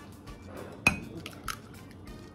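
A raw egg knocked against a hard edge to crack it for separating the whites: one sharp click with a brief ring about a second in, then a smaller tap.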